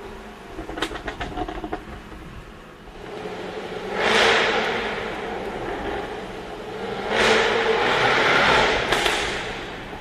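Jaguar sports car's engine and exhaust heard from inside the cabin in a tunnel: a few sharp exhaust pops near the start, then two hard bursts of acceleration, a short one peaking about four seconds in and a longer one from about seven to nine seconds.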